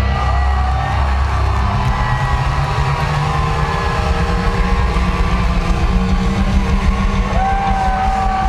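Live rock band playing loud, with distorted guitars and bass holding a steady heavy low end and long held notes sliding above it, the crowd's voices mixed in.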